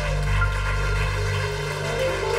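Live band music: sustained keyboard chords over a held bass note, with a few short higher melodic notes on top.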